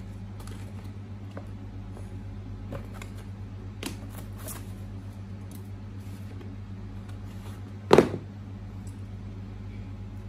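Faint rustling and small clicks of a cardboard box, paper leaflet and foam insert being handled during an unboxing, with one sharp knock about eight seconds in as the metal valve is lifted out of the box.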